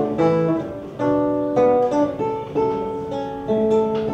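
Nylon-string classical guitar playing alone between sung lines, chords struck anew about every half second to a second.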